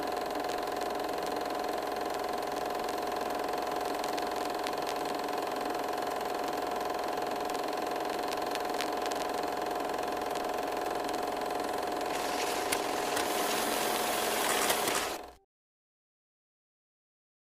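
A steady mechanical whirring hum with a constant tone and faint scattered clicks. It cuts off suddenly just before the end.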